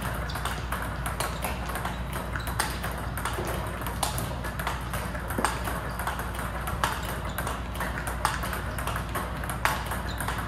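Table tennis drill against a ball-feeding robot: celluloid-type ping-pong balls clicking off the table and paddle several times a second, with a louder paddle hit about every second and a half.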